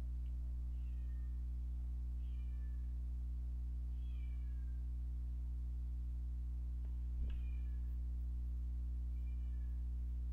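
Several faint short animal calls, each falling in pitch, heard about six times over a steady low hum, with a single click about seven seconds in.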